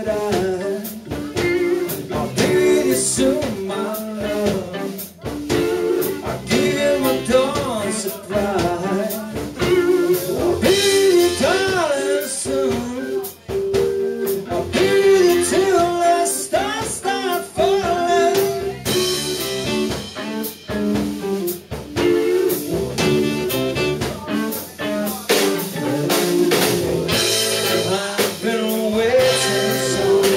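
Live band playing a bluesy number on drum kit and other instruments, with a melodic lead line that bends in pitch.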